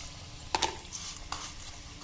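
Breadcrumb-coated vegetable tikki deep-frying in medium-hot oil in a steel kadai: a steady sizzle, with two sharp clicks, one about half a second in and a fainter one just past a second.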